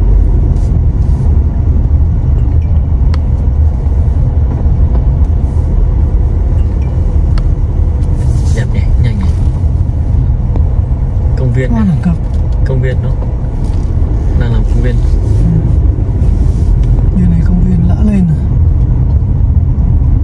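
Steady low rumble of a car driving slowly over a rough dirt road, with tyre and engine noise heard from inside the cabin.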